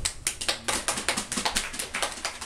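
A small audience applauding, the individual hand claps distinct and irregular.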